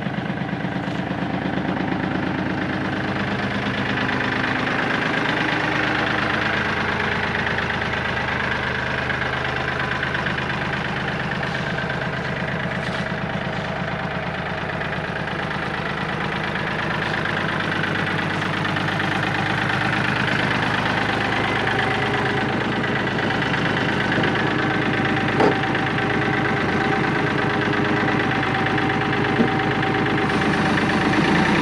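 Kioti CK3510SE subcompact tractor's three-cylinder diesel engine running steadily at a low, even speed, with a couple of small clicks near the end.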